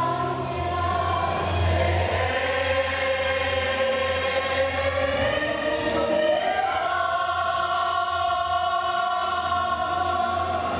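Mixed choir of men's and women's voices singing together, settling into long held chords in the second half.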